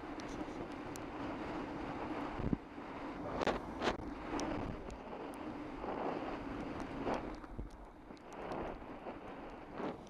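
Wind noise on a bicycle-mounted camera's microphone and tyre hiss on a wet road, with the steady hum of a car engine following close behind. A few brief knocks from the bike jolting over the rough road surface come around the middle.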